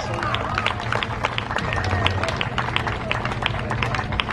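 Footsteps of a line of Greek folk dancers on stone paving: a quick, irregular run of sharp clicks.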